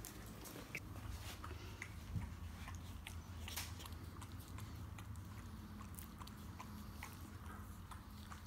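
Faint, scattered small clicks and soft rustles of a Shiba Inu puppy nibbling and mouthing at a man lying on the floor, over a low steady room hum.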